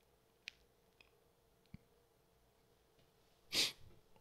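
A few faint mouse clicks, then one short breath close to the microphone about three and a half seconds in.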